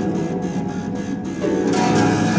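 An ensemble of concert harps playing together, a dense texture of many plucked notes; it thins a little in the middle and swells again about a second and a half in.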